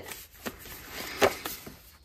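Paper tags and cardstock being handled and shuffled by hand: a soft, quiet rustle with two light taps a little past a second in.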